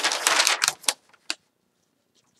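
Sheets of printer paper rustling and crackling as they are handled and flipped, ending in a couple of sharp snaps about a second in, then quiet.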